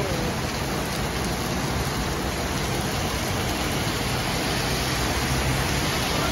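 Heavy tropical downpour pouring onto the road and pavement: a steady, even hiss of rain. Near the end a double-decker bus's engine rumbles low under the rain as it approaches.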